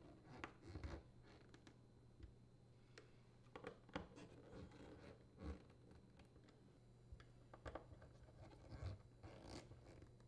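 Faint, scattered clicks and scrapes of a nut driver turning screws into a dishwasher detergent dispenser's metal retaining bracket, over a low steady room hum.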